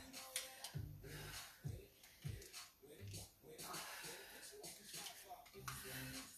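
A person exercising with dumbbells: soft low thuds of feet on foam floor mats during squats and kicks, with breaths in between.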